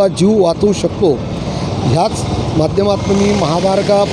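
A man talking over the steady noise of highway traffic, with trucks passing close by.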